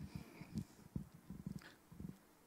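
Faint room noise in a pause, with a few soft, low knocks and blips scattered through it.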